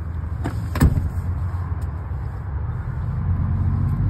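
Steady low rumble inside an SUV's cabin, with two sharp knocks, the second louder, both within the first second.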